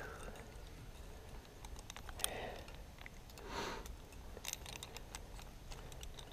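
Scattered light metallic clicks and taps of climbing gear, carabiners and quickdraws on the harness, with two soft breaths from the climber about two and three and a half seconds in.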